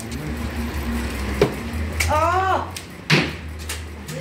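Recurve bow shot: a sharp snap of the string about one and a half seconds in, a brief voiced exclamation, then a louder thump just after three seconds.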